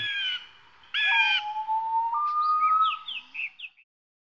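Bird calls: two short calls about a second apart, then a long whistled note that steps up in pitch partway through, with quick falling chirps above it near the end, fading out just before the end.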